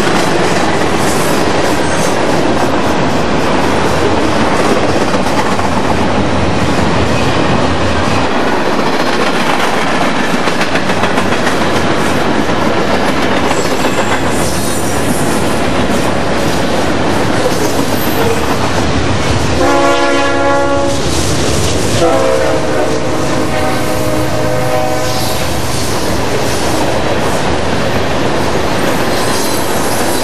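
Freight train cars rolling past close by, a loud steady rumble of steel wheels on rail. About twenty seconds in a locomotive horn sounds a chord, then a second, longer blast at a lower pitch.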